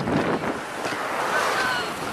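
Wind rushing over a handheld camera's microphone as a cyclist rides at speed, with a heavier buffeting gust right at the start.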